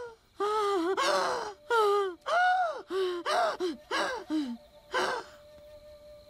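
A woman's voice in a string of about eight short, high-pitched gasping cries of fright, stammered one after another and fading out near the end.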